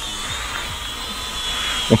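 Eachine E58 mini quadcopter's propellers and small motors whining steadily as it descends in automatic landing mode, the pitch sagging slightly near the end.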